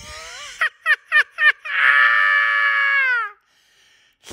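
A man's high falsetto vocal outburst with no words: four short rising yelps in quick succession, then one long held squeal that drops in pitch as it ends.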